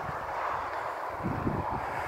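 Strong wind buffeting a phone's microphone: a steady rushing noise with an uneven low rumble underneath.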